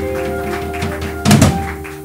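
Live band music: electric guitar and upright bass holding a sustained chord, with one loud thump about a second and a half in. The held notes die away near the end.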